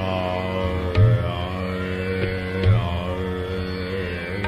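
Hindustani classical vocal in Raag Darbari Kanhra: a male voice holds long notes with slow glides over a tanpura drone. Two deep tabla strokes fall, about a second in and again near three seconds.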